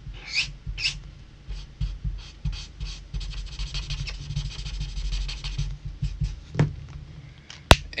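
Copic marker nib rubbing and squeaking across paper in repeated short strokes, packed into a quick run in the middle as the yellow is laid in. Near the end a single sharp click, the marker's cap snapping on.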